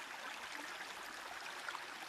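Faint, steady rush of running water from a brook.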